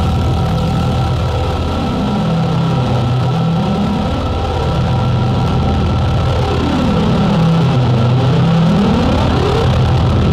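A dark electronic drone from a gothic darkwave album: held low synthesizer tones with a slow sweep rising and falling every couple of seconds.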